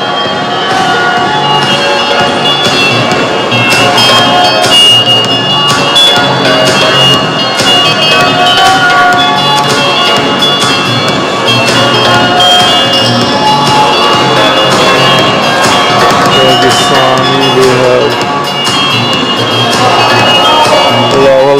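Music playing steadily and loudly, with frequent sharp beats and held tones.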